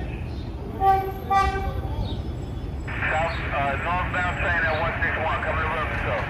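Approaching subway train sounds its horn in two short blasts about a second in, over a low rumble of the train on the elevated track. About halfway through, a station public-address announcement plays over the loudspeakers.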